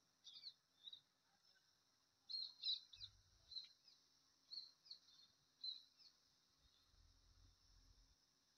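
Near silence with faint, short bird chirps, clustered from about two to six seconds in, over a steady faint high hiss.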